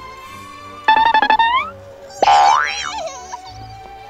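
Background music with added cartoon sound effects: about a second in, a quick run of short springy notes ending in an upward slide, then a second later a loud sliding whistle that rises and falls with a wobble.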